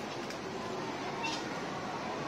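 Steady background murmur of a busy airport terminal hall, with one brief high-pitched sound just past the middle.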